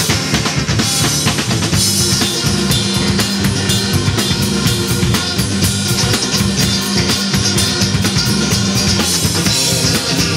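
Live electric blues band playing: electric guitars over a steady drum-kit beat.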